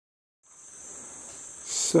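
Steady, high-pitched drone of rainforest insects, starting about half a second in.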